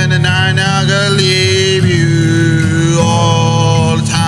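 A man singing in long, drawn-out held notes while strumming an acoustic guitar, his voice sliding slowly down in pitch on a note held through the middle.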